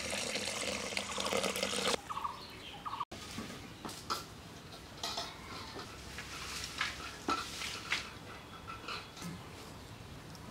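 Water poured from a jug into a steel karahi of red lentils, a steady splashing pour that stops abruptly about two seconds in. After that come quieter, scattered small splashes and clinks of the lentils being stirred in the water in the pan, with a few short pitched calls.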